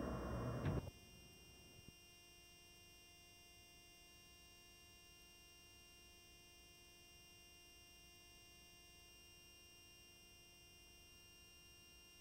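Near silence with a faint steady electrical hum and thin high tones from the tape, after the preceding programme sound cuts off abruptly about a second in.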